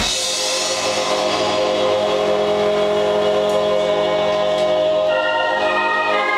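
Live band music in which the drums drop out at the start, leaving a steady held chord on a Roland VK-7 drawbar organ with a few faint cymbal touches. About five seconds in, higher sustained notes join over the chord.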